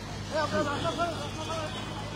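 Street crowd noise: faint voices of people talking in the background over a steady low hum of motorcycle and other vehicle engines on the road.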